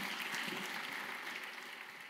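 A congregation applauding, the clapping slowly fading out.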